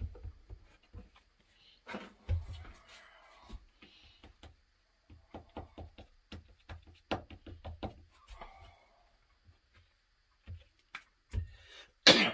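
Light taps and knocks of hand work with a glue bottle and brush on a workbench, scattered and irregular, with a quick run of small clicks in the middle.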